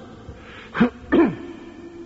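A man clearing his throat: a short breath in, then two brief throaty bursts about half a second apart, the second falling in pitch.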